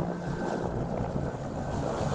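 Helicopter flying low overhead with a long line slung beneath it: steady rotor and engine noise with a thin, steady whine over it.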